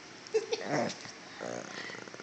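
A small dog making a few short, soft grumbling vocalizations, the last one trailing into a low rattling rumble.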